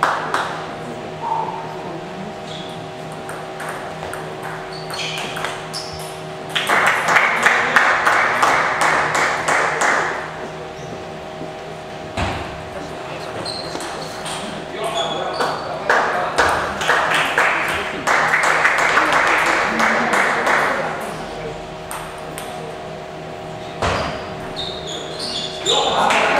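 Table tennis ball clicking off the bats and the table in fast rallies, in a large hall. Between the rallies come two longer bursts of noise from the spectators, with voices.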